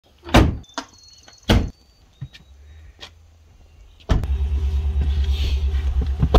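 Pickup truck tailgate slammed shut, followed by a second heavy thud about a second later and a few light clicks. About four seconds in, a steady low engine rumble from the Ram 1500 pickup sets in suddenly and keeps going.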